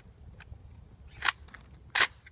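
Two sharp metallic clacks from the Vepr 7.62x54R rifle being worked by hand, about two-thirds of a second apart, the second louder. They are handling noise from loading or charging the rifle, not a shot.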